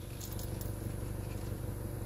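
Car engine idling, heard from inside the cabin: a steady low hum with a fast, even pulse.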